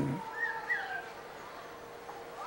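A small bird chirping twice, short chirps that rise and fall, heard in a pause between words.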